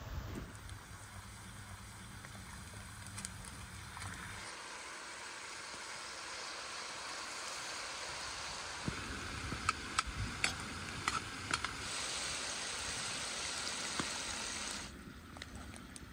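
Lamb and potatoes frying in hot fat in a wide wok: a steady sizzle, with a run of sharp pops and crackles in the middle. The sizzle drops away shortly before the end.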